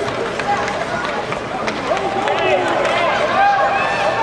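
Ice hockey rink spectators shouting and calling out, several high voices overlapping and growing busier toward the end, with scattered clicks of sticks, puck and skates on the ice.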